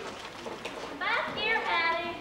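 A high-pitched young voice on stage, sweeping up sharply about a second in and loudest in the second half.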